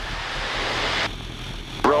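Steady engine and rushing-air noise of a Citabria light aircraft in aerobatic flight; the upper hiss drops off suddenly about halfway through.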